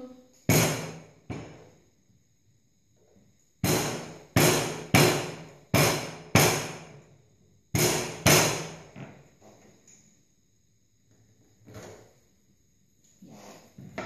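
A ginger root being smashed with a pestle on a wooden cutting board: about nine sharp thuds, two near the start and then a quick run of seven, followed by a couple of faint knocks.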